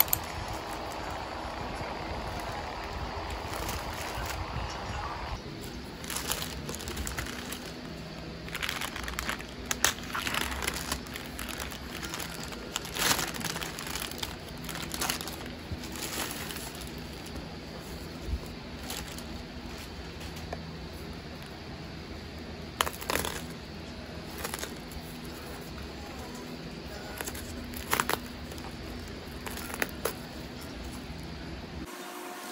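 A plastic courier mailer crinkling and rustling in irregular bursts as a cardboard-wrapped parcel is handled and pulled out of it, with cardboard scraping.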